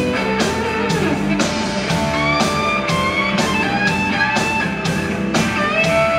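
Live blues-rock band: an electric guitar solo with sustained, bending notes over a steady drum beat and bass.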